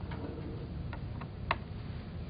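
A few light clicks, the sharpest about one and a half seconds in, over a steady low hum.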